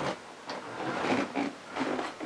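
Faint knocks and shuffling as a person climbs out of a wearable robot suit frame, a few soft clunks spread through the moment.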